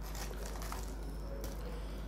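Faint rustling and crinkling of a paper liner and cardboard box as a piece of fried chicken is picked up and lifted out.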